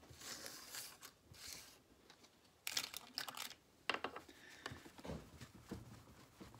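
Fraction pieces being swept up off a wooden table by hand. Soft sliding and rustling comes first, then several sharp clicks and knocks as the pieces are gathered, from about three seconds in.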